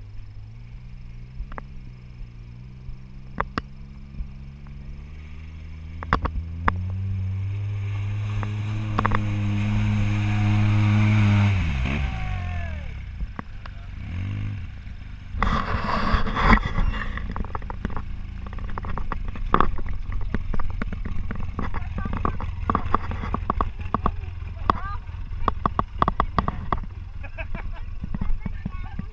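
Polaris RZR side-by-side engine pulling through the river and up the bank. Its pitch steps up about a quarter of the way in and climbs to the loudest point, then falls sharply just before halfway as it lets off. A clatter of knocks and clicks follows.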